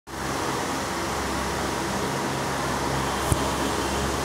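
Steady background hum and hiss of room noise, with one short click a little over three seconds in.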